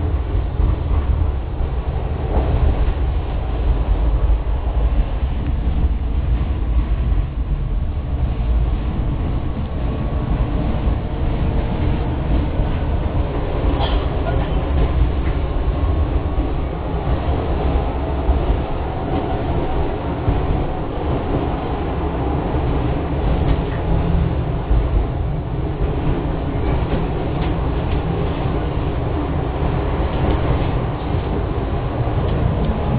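Tatra T6A2D tram running, heard from inside the passenger car: a steady, loud rumble of the wheels and running gear on the rails, with a brief high squeak about fourteen seconds in.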